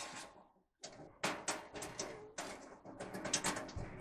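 Irregular light clicks and knocks of metal parts being handled inside an opened clothes dryer cabinet, starting about a second in, with a dull thump near the end.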